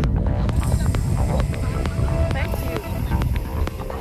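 Wind buffeting the microphone, a heavy low rumble throughout, with background music with a steady beat underneath and a few brief snatches of voice.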